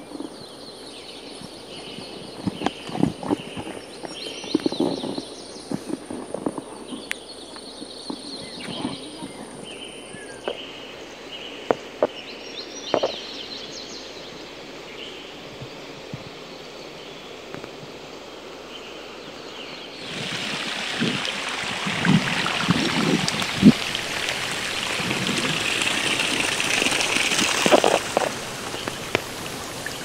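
Monsoon hillside ambience: birds chirping over a faint hiss, with a thin steady high tone for the first ten seconds or so and scattered knocks. About two-thirds of the way through it changes abruptly to a louder steady hiss of rain, birds still calling.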